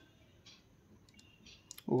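Faint scratching and clicking of a pen writing short strokes on paper.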